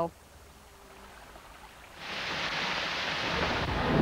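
A faint, quiet background for the first two seconds, then rushing water sets in about halfway through and grows slightly louder.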